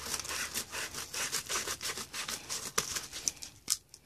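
Scissors cutting along the edge of a padded kraft mailer: a run of rasping snips, several a second, that thins out to a few sharp clicks near the end.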